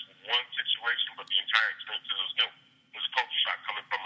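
Speech only: a man talking over a telephone line, his voice thin with the high end cut off, with a short pause about three seconds in.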